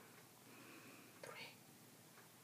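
Near silence, with one faint, whispered count of "three" by a woman about a second in.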